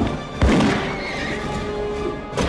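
Film score music with a sudden loud hit about half a second in, followed by a horse's whinny.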